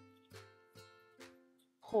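Light background music of plucked strings, ukulele-like, a note about every half second over a soft low bass.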